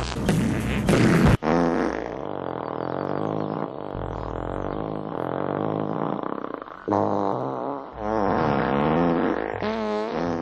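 A long, drawn-out fart, edited to run on: a loud, raspy blast in the first second and a half, then a pitched, wavering fart that bends up and down for the rest, swelling twice more near the end.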